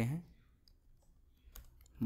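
A few faint computer keyboard key clicks, sparse at first and closer together near the end, as a word is typed.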